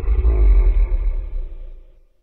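A deep, rumbling roar sound effect that starts suddenly and dies away near the end.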